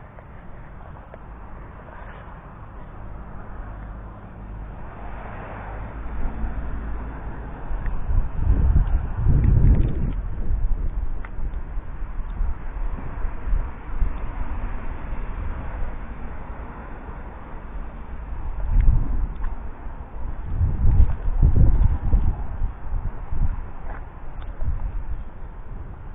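Wind buffeting the camera's microphone outdoors, in gusts strongest about eight to ten seconds in and again about nineteen to twenty-two seconds in, over a steady outdoor background.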